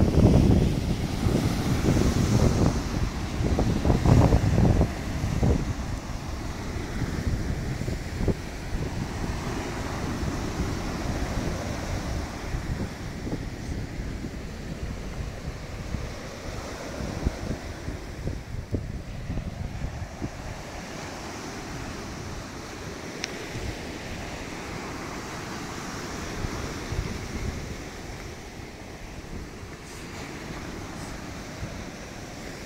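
Sea waves breaking and washing up a sand beach, a steady rushing surf. Wind buffets the microphone in the first five seconds, then the surf goes on more evenly and slowly grows a little quieter.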